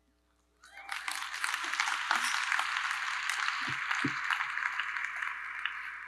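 Audience applauding: a short hush, then clapping that starts about half a second in, runs steadily and tapers off near the end.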